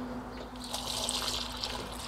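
Water trickling steadily from the spout of a plastic watering can onto the soil around tomato plants, growing brighter about half a second in.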